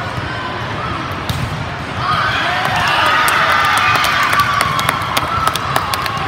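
Indoor volleyball court noise with voices calling; about two seconds in, many voices break into loud shouting and cheering as the point is won, joined by a quick scatter of sharp claps.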